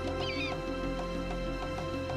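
Soft background music with a brief, high, squealing eagle cry about a quarter second in.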